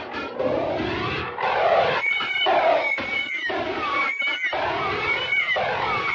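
Racing car engine at high revs, its pitch climbing and breaking off repeatedly at gear changes.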